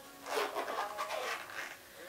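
Rustling and rubbing as a small portable iPod speaker is handled in the lap, a scratchy, scuffling noise for about a second and a half.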